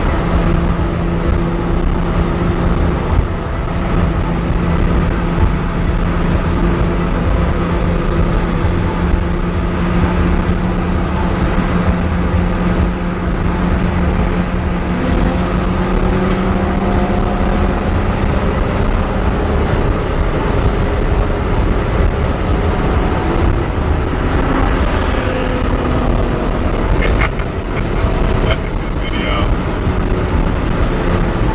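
Car cabin noise at highway cruising speed: a steady engine drone over road and wind rumble, with the drone's pitch shifting about twenty seconds in.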